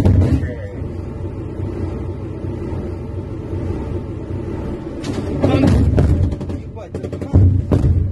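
Steady low rumble and hum inside an armoured vehicle, broken by two loud bursts of sharp knocks, one about five seconds in and another about seven and a half seconds in.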